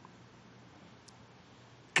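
A pause in a man's speech: quiet room tone through the podium microphones, broken by one faint brief tick about halfway through, before his voice comes back at the very end.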